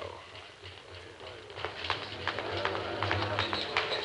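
A quick, fairly regular run of light knocks, about four or five a second, starting about a second and a half in, over the old soundtrack's low hum. It is boxing-gym training noise such as a speed bag or skipping rope.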